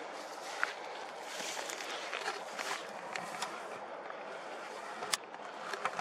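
Quiet outdoor evening ambience: a faint steady hiss of distant city traffic, with a few small clicks of camera handling, the sharpest about five seconds in.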